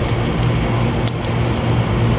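A steady low hum with a background wash of noise, and a single light click about a second in from the plastic fuse pull-out block being handled.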